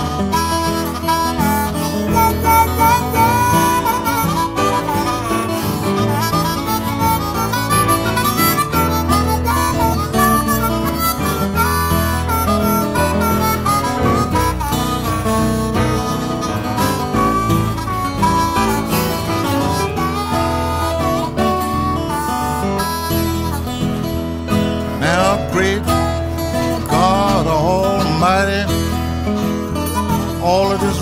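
Instrumental blues break: a diatonic blues harmonica plays a solo over fingerpicked acoustic guitar in Piedmont blues style. Near the end the harmonica bends its notes, so the pitch swoops up and down.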